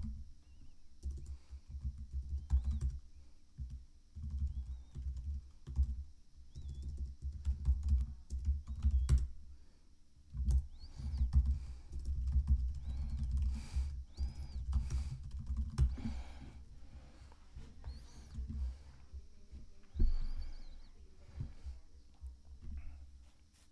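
Typing on a computer keyboard: a quick, irregular run of keystrokes with pauses, plus a few mouse clicks.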